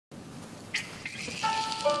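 Sanxian and guzheng duet beginning: after low hall noise, a sharp plucked attack comes about three quarters of a second in. Sustained plucked string notes follow from about one and a half seconds in.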